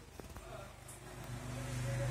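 A motor vehicle's low engine hum growing steadily louder, after two small clicks near the start.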